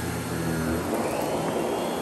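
Miele vacuum cleaner running, its powered brush head pushed across a shag rug sucking up debris. About halfway in the steady hum gives way to a louder rushing sound with a rising whine.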